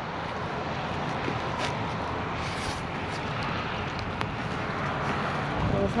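Steady outdoor background noise from wind on the microphone and passing traffic, with a few faint clicks.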